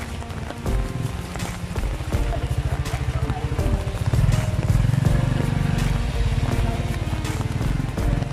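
Background music over a small motorcycle engine running close by. The engine grows louder about halfway through as the bike passes, then carries on.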